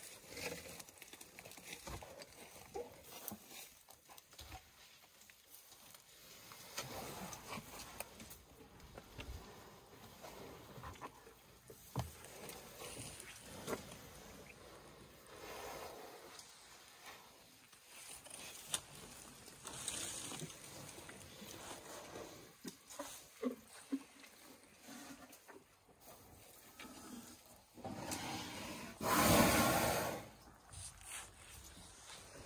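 African elephants feeding on marula bark: scattered snaps, crunches and rustles as they strip and chew the bark. Near the end comes one loud breathy rush as an elephant's trunk sniffs right at the microphone.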